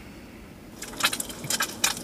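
An egg frying in oil in a pan on a portable gas stove, crackling and spitting in a quick irregular run of sharp pops that starts about a second in.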